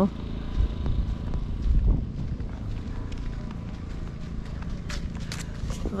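Wind rumbling on the camera microphone, strongest in the first two seconds, with a few faint crackles near the end.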